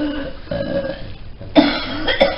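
A woman retching and gagging over a plastic bowl: strained throaty heaves, the loudest one sudden, about one and a half seconds in.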